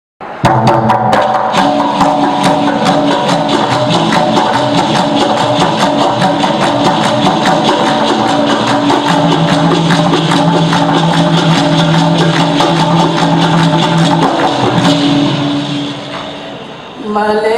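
Dikir barat music: a fast, even run of percussion strokes over held steady tones, starting abruptly just after the opening and fading near the end.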